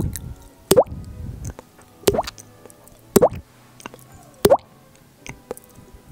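Mouth pops made by flicking a finger against the cheek with the mouth held open: about five pops, roughly a second apart, each rising quickly in pitch.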